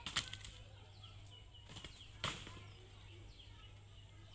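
Dry palm fronds rustling and crackling as they are handled, with two sharper crunches, one right at the start and a louder one about two seconds in. Small birds chirp faintly in the background.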